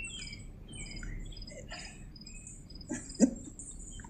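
Birds chirping repeatedly in the background, short high calls scattered through the stretch. About three seconds in, a brief low vocal sound from a person cuts in.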